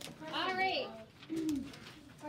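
A person's voice making two short wordless sounds: a high, wavering one about half a second in and a lower, arching one about a second later.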